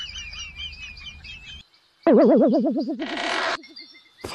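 Edited-in comedy sound effects: a quick run of bird-like chirps, then after a brief silence a loud tone that wobbles fast up and down in pitch, with a short hiss partway through.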